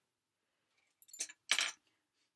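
Clay sculpting tools clinking and rattling together as they are handled, in two short rattles a little after a second in.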